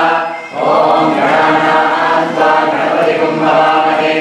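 A group of voices chanting Vedic Sanskrit mantras together in a steady, continuous recitation, with a brief breath pause about half a second in.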